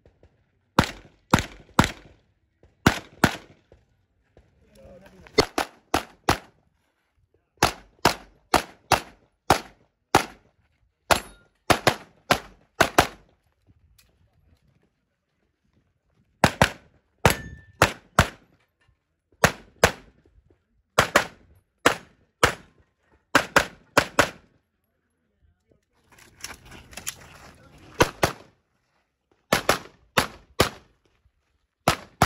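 Handgun shots at a practical pistol match stage, fired mostly in quick pairs and short strings with brief pauses between positions and a gap of about two seconds just past the middle.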